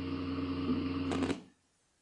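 Steady low background hum of the recording room, with a brief soft noise just past a second in, then cutting off to dead silence about one and a half seconds in.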